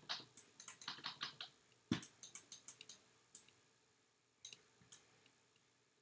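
Clicking at a computer: quick runs of several sharp clicks with short gaps between them, and one duller knock about two seconds in.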